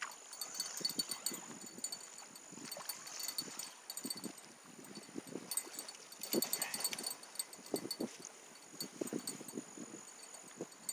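Irregular knocks, rustles and handling noise as a hooked blue catfish is reeled in and scooped up in a landing net at the water's edge. Under it runs a steady, high, pulsing chorus of night insects.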